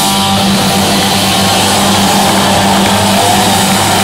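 Punk rock band playing loud and live: distorted electric guitars and bass holding a steady low chord over drums and crashing cymbals.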